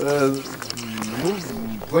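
Only speech: a man talking, drawing out long hesitant vowel sounds between words.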